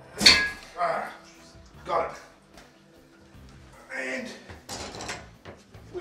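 An old ceramic toilet pan being worked loose from the floor, with one sharp knock about a quarter second in. Short bits of voice follow, over soft background music.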